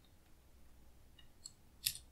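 Computer keys clicking as a number is typed: a few faint taps, then one sharper click near the end.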